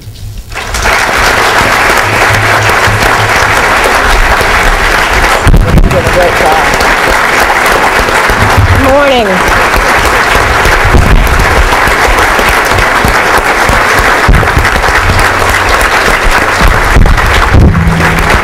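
Audience applause, beginning about half a second in and continuing steadily and loudly.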